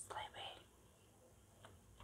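A brief soft whisper at the very start, then near silence with one faint tick about one and a half seconds in.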